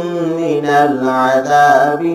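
A man chanting Quranic recitation in a slow, melodic style, holding long notes that slide gradually downward in pitch.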